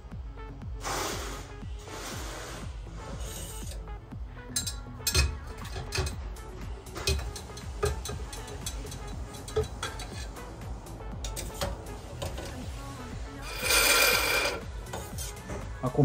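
A large hand syringe with a stop tube sucks excess fork oil out of a Showa BFF fork tube, with handling clicks. About 13–14 s in comes its loudest sound, a burst of slurping as the tube's tip clears the oil and draws air. That sound signals that the excess oil is out and the 160 mm air gap is set.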